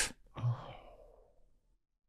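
A man sighs once: a short low voiced sound that trails off into a fading breath.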